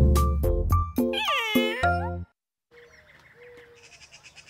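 Short cartoon jingle with a cat meow over it about a second in; the music cuts off about two seconds in. Faint quiet sounds follow, with a soft, fast ticking near the end.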